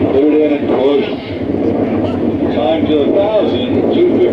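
Indistinct men's voices talking and calling out, too unclear to make out words, over a steady background of noise.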